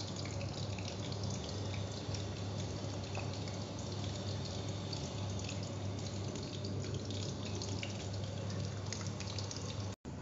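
Hot oil sizzling steadily as shrimp tempura deep-fries, a constant crackling hiss over a low hum.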